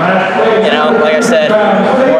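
Speech: a man's voice talking, though the transcript caught no words here.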